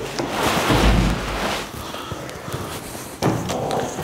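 Footsteps and clothing rustle as people climb an indoor staircase, with a heavy low thump about a second in and a sharp knock a little after three seconds.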